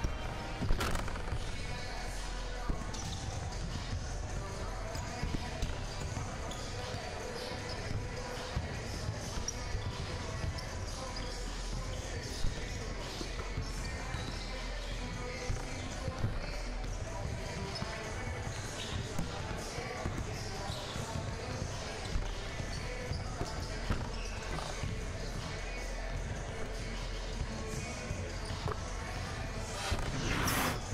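Gymnasium basketball ambience: a basketball bouncing on the hardwood court with scattered sharp thuds, over a steady murmur of crowd voices and faint background music.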